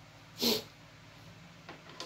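Steady low mains hum from a switched-on bass amplifier. A short, loud noisy burst comes about half a second in and a faint click near the end, while the instrument cable and its jack are handled at the amp's input.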